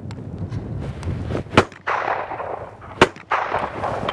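Two shotgun shots about a second and a half apart, fired at a pair of clay targets.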